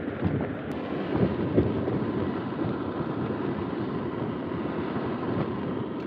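Steady wind rushing around a tent, heard from inside its vestibule.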